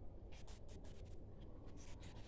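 Marker pen writing on a whiteboard: a quick run of short, faint scratching strokes.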